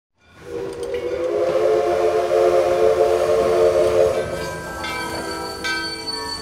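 Steam locomotive whistle blowing one long chord of several notes for about three and a half seconds. Music comes in as the whistle ends.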